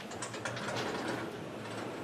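Handwriting strokes of a writing implement on a writing surface: a quick run of short scratches and taps, densest in the first second, then lighter.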